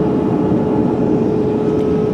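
Steady cabin noise inside a Boeing 787 Dreamliner airliner: an even rushing noise with a constant hum running through it.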